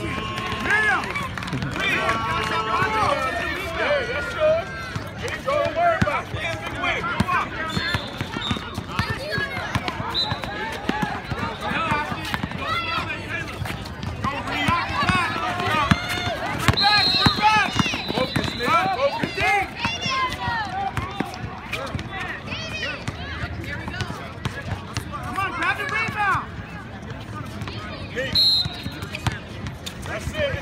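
A basketball dribbled and bouncing on an outdoor court, with footfalls and constant shouting from players and onlookers. A few short high tones cut through it.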